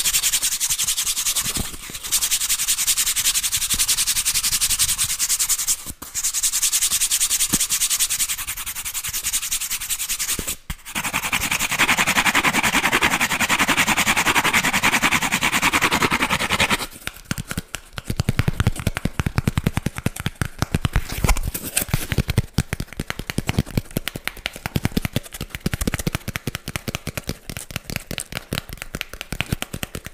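A piece of cardboard rubbed and scratched close to a microphone in long continuous strokes, with brief pauses between them. After about 17 seconds this gives way to rapid, irregular taps and crackles.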